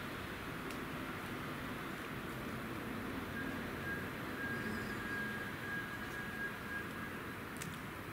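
Steady outdoor background hiss with no distinct events. A faint, thin, high whistle-like tone holds for about four seconds in the middle.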